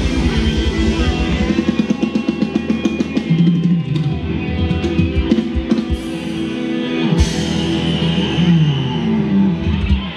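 Live band playing Thai ramwong dance music with drum kit and guitar, loud through the stage speakers. A fast pulsing low beat gives way to held notes with scattered drum hits about a second and a half in, and the music cuts off near the end.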